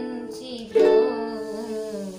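Ukulele strummed. A chord rings on from just before the start, a new chord is strummed about three-quarters of a second in, and it is left to ring and fade out.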